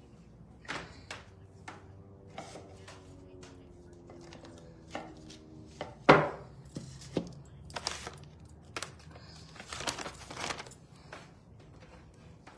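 Knocks, taps and rustles of objects being handled and set down on a paper-covered worktable, with one sharp knock about six seconds in and a cluster of taps near the end as a small painted frame is placed down.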